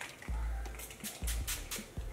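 A pump-spray face mist bottle spritzed several times in quick succession, each spray a short hiss, with a couple of low handling thumps. Faint music plays underneath.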